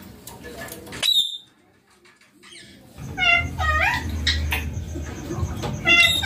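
Indian ringneck parakeet calling: one short, high squawk about a second in, then after a pause a run of chattering, speech-like calls that bend up and down in pitch.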